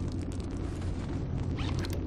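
Car interior while driving: a steady low rumble with a rapid scatter of small crackling clicks, a little denser near the end.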